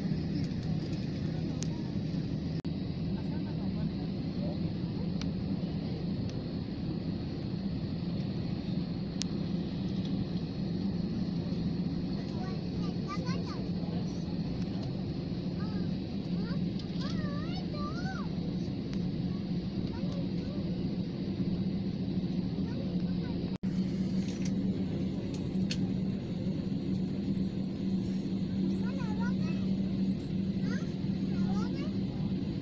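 Steady low drone inside a jet airliner's cabin on the ground, from the engines and air-conditioning, with indistinct passenger voices in the background. The sound cuts out for an instant about two-thirds of the way in.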